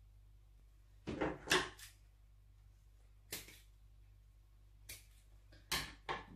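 Handling noises from working a tape measure, cord and scissors on a tabletop: a cluster of short rustles and knocks about a second in, then single short knocks near the middle and near the end, over a low steady hum.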